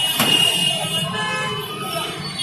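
Busy road traffic with vehicle horns sounding, and a sudden sharp noise just after the start.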